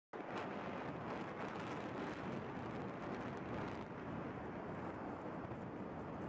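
Distant rumble of a row of tower blocks collapsing in an explosive demolition, a steady noisy rumble with faint crackles in the first two seconds.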